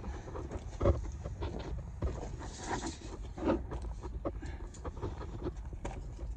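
Scattered scuffs and knocks of moving about over brick rubble and handling a steel tape measure, with one sharper knock about a second in.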